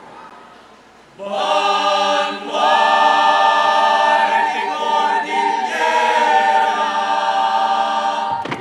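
A choir singing a cappella. After a short pause, the full choir comes in about a second in and holds sustained chords, with brief breaks between phrases.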